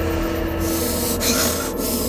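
TV drama background score: a sustained low drone under a held note, with a run of noisy swishing effects starting about half a second in.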